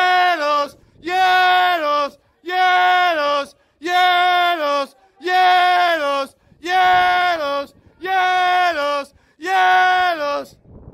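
A football supporter's voice chanting the same two-syllable call, "Yellows", over and over at a steady pace, about once every 1.3 seconds: each call is a long held note that drops to a lower one at the end.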